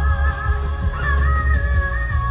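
Live pop-rock band music with a female singer holding a high, sustained note with vibrato over a heavy bass beat; about a second in the note steps up in pitch and holds.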